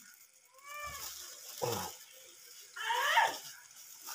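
Three short, high-pitched wordless vocal calls. The first rises and falls about a second in, a brief falling one follows, and the loudest comes near the end.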